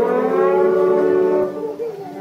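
Concert wind band holding a long sustained brass chord, some of its upper notes sliding slowly upward, which drops away near the end as the next phrase begins.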